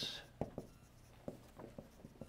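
Dry-erase marker writing numbers on a whiteboard: faint, short, irregular strokes and taps of the marker tip.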